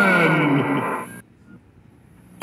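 A male trailer narrator's voice drawing out the last word of the title, its pitch sliding down as it fades away with an echo about a second in, followed by near silence.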